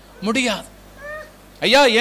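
A man's voice speaks a short phrase. About a second in comes a faint, brief, high-pitched call that bends up and down in pitch, and then he speaks again near the end.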